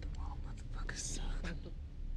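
A man whispering closely and menacingly, breathy hissed words with no full voice, over a steady low room hum.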